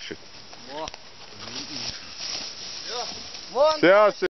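Faint human voices a few times, then a louder voice near the end, over a light rustling hiss.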